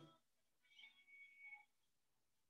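Near silence: room tone, with a faint thin high-pitched tone lasting about a second near the middle.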